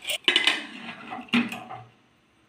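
Aluminium pressure cooker lid being fitted and closed on the pot, with a few sharp metal clanks, the last about a second and a half in.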